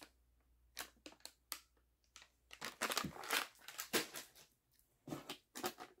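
Plastic pouch packaging of a flavor cartridge crinkling as it is handled, in short scattered bursts with a few light clicks.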